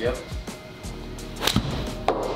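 Golf iron striking a ball off a hitting mat, one sharp click about one and a half seconds in.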